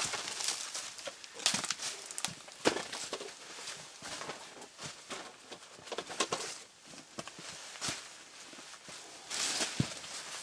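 Plastic sheeting and bags rustling and crinkling, with scattered knocks and clicks as stored things are handled and moved about.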